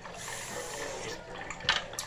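Water running steadily from a bathroom tap, with a short sharp click near the end.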